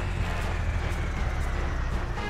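Cartoon sound effect of a giant mining dump truck's engine: a steady, heavy low rumble as the truck drives, with a faint whine falling slowly in pitch.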